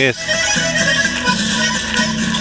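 Chilean cueca played live on accordion and guitar, the accordion holding sustained notes that step from pitch to pitch.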